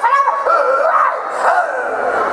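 A man's high-pitched, drawn-out vocalizing, its pitch sweeping up and down like a comic wail, giving way about a second and a half in to noise from the audience.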